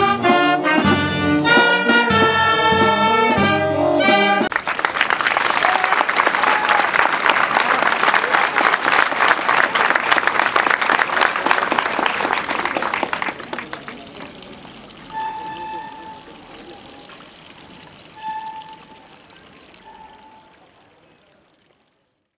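Brass band playing a march, which stops sharply about four and a half seconds in. Crowd applause follows and dies away.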